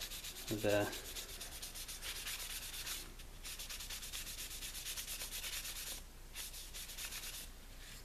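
A small wooden strip being hand-sanded with a sanding block: quick, scratchy back-and-forth strokes, with short pauses about three and six seconds in.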